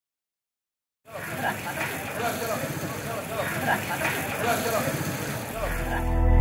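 Busy street ambience, starting suddenly about a second in: traffic noise and the overlapping chatter of passers-by's voices. Low music comes in near the end.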